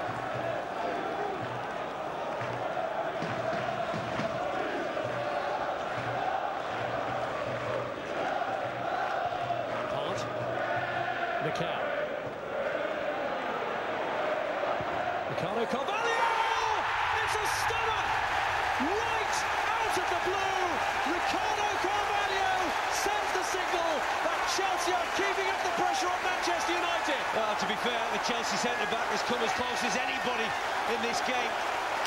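Football stadium crowd singing, then a sudden loud roar about sixteen seconds in as the home side scores, carrying on as sustained cheering.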